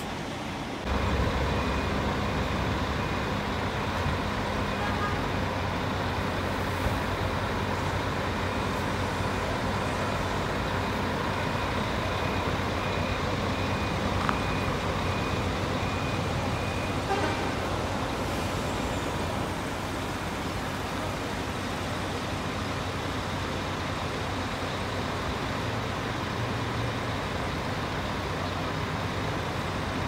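Diesel coach engines running at idle: a steady low engine hum over general traffic noise, getting louder about a second in, with distant voices and a faint repeating beep through the first half.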